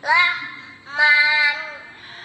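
A child's high voice singing two drawn-out notes: a short one that rises and falls at the start, then a longer held note about a second in.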